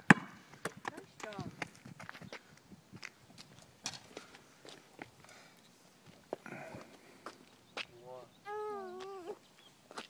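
Faint footsteps and light knocks on a street, then near the end a wavering, voice-like call lasting about a second.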